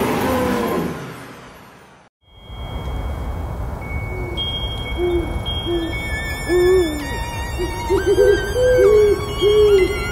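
A pop song fades out into a brief silence. A spooky night sound effect follows: an owl hooting in short hoots, a few at first and then a quicker run near the end, over a low rumble and thin high wavering tones.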